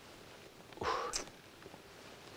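A man's short, breathy exhale through the nose and mouth a little under a second in, in a quiet room.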